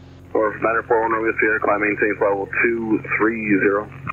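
A voice transmitting over the aircraft radio, its sound cut off above the voice range as radio audio is, starting about a third of a second in, over the steady low drone of the Cirrus SR20's engine.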